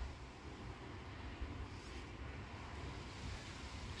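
Faint steady low rumble with a light hiss: background noise, with no distinct sound events.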